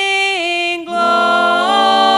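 Female voices singing a southern gospel song, holding long notes that step between pitches, with a brief break a little before one second in.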